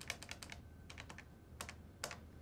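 Desk telephone keypad buttons clicking as a number is dialled: a quick run of about six presses, then four more, then one more near the end.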